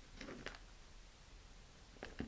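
Near silence, with a few faint soft rustles and ticks about half a second in from fingers handling a rubber-glove fingertip and string.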